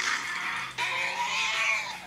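Animated Gigantoraptor's roar sound effect: one drawn-out screeching call that starts a little under a second in and lasts about a second.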